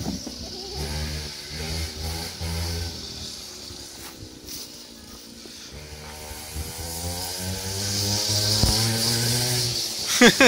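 Small engine of a children's quad bike running as it is ridden, its pitch rising and falling with the throttle. It fades around the middle and grows louder again over the last few seconds as the quad comes back.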